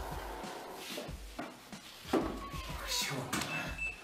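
Music that stops about a second in, then a loud, drawn-out, meow-like cry with gliding pitch starting about two seconds in.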